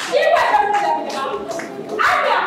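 Hand clapping mixed with a woman's voice speaking.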